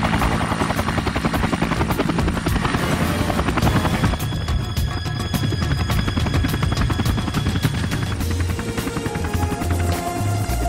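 Helicopter in flight: the fast, steady beating of its rotor blades over a deep engine rumble, with background music mixed under it.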